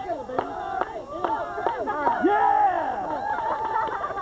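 A group of voices talking and calling out over each other, with no single speaker clear; one voice is drawn out and falls in pitch a little after two seconds in.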